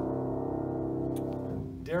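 A Knabe 47-inch studio upright piano's last chord ringing on and slowly dying away after the playing stops, fading out near the end. A man starts speaking just as it fades.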